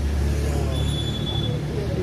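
Street traffic: a steady low engine rumble from a vehicle close by, with indistinct voices in the background.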